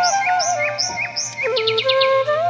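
Slow flute melody with birds chirping repeatedly over it, about three chirps a second, and a quick trill near the end.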